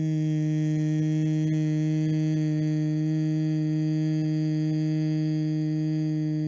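A woman humming a steady bee breath (bhramari pranayama): one long, even nasal hum held on a single low pitch through a slow, drawn-out exhalation.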